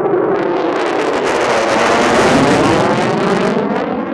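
Lockheed Martin F-22 Raptor's twin Pratt & Whitney F119 turbofans in afterburner, a loud jet roar passing overhead. It swells to a peak about two seconds in, with a sweeping, phasing tone, then starts to fade as the jet moves away.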